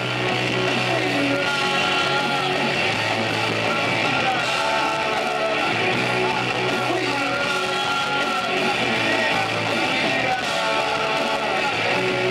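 Rock band playing live, with electric guitars, drums and singing into microphones, heard from the audience through a camcorder recording.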